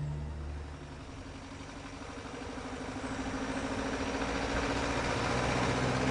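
Car engine running as a car approaches, growing louder over the first few seconds and then holding steady.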